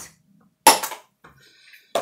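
A cosmetic container knocks sharply on a hard surface about two-thirds of a second in, as an empty product is put down or the next one is picked up. Faint rustling of handling follows, then a second, softer knock near the end.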